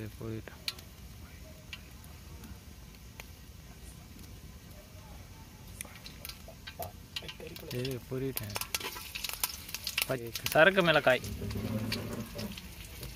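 Cooking oil heating in a metal kadai, faint and quiet with occasional crackles at first. In the second half dried red chillies go into the hot oil and sizzle and crackle, loudest near the end.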